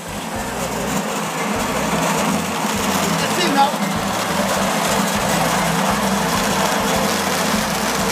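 Small electric coffee huller running as it strips the parchment husk from dried coffee beans: a steady, dense whirring rush over a low hum. It swells over the first second or two and then holds level.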